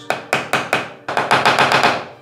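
Pliers tapping on a ceramic wall tile to chip a small mark before drilling: sharp light metal-on-tile taps, a few spaced ones at first, then a quick run of about eight to ten taps a second in the second half.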